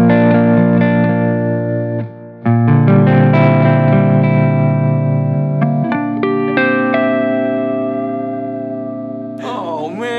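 Electric guitar playing chords: a B-flat major chord held, then, after a short break, a richer Bbmaj6/9#11 voicing struck, with single notes picked over it that ring and slowly fade. A man's voice comes in near the end.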